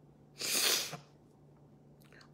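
A woman blows out one short, forceful puff of breath through pursed lips, lasting about half a second and coming just under half a second in, over a faint steady hum.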